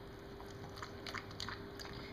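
A dog lapping water from a metal bowl: faint, irregular laps, over a faint steady hum.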